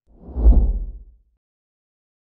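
Logo sting sound effect: a single deep, bass-heavy whoosh that swells to a peak about half a second in and dies away within about a second.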